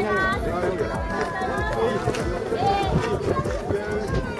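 Several people talking over one another, with a steady run of footsteps crunching on loose volcanic gravel underneath.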